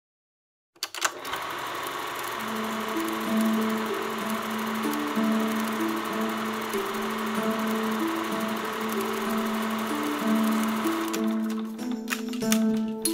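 A film projector's rapid, steady clatter with a simple melody playing over it, starting about a second in. The clatter stops shortly before the end while the melody carries on.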